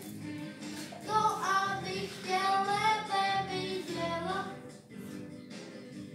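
A song with instrumental accompaniment, sung by a high voice in a melodic line that ends about five seconds in, leaving only quieter accompaniment.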